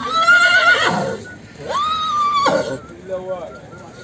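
An Arabian stallion whinnying twice: a call of about a second, then a second call of about the same length that holds a steady high pitch.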